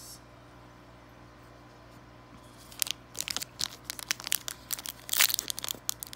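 Foil booster-pack wrapper of a Yu-Gi-Oh! Toon Chaos pack being crinkled and torn open by hand: a quick, irregular run of sharp crackles starting about three seconds in, after a faint steady hum.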